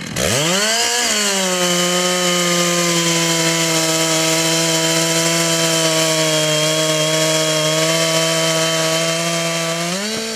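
Two-stroke chainsaw revving up at the start, then running steadily under load with a nearly level pitch as it saws a slice off a thick log. Right at the end its pitch rises as the chain breaks through the wood.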